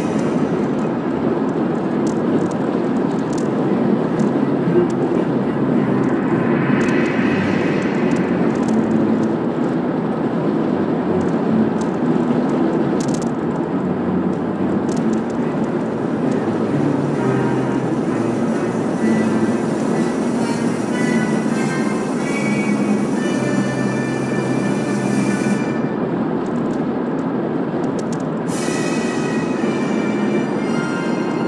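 Steady road and tyre rumble heard from inside a moving car's cabin, with music from internet radio playing quietly on the car stereo, its tune clearer in the second half.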